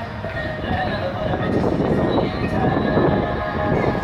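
Hip-hop music with heavy bass playing loudly through a 2006 Dodge Magnum's aftermarket car stereo, eight-inch Memphis Audio M-Sync speakers in the doors, heard from outside the car. This part of the song has no clear words.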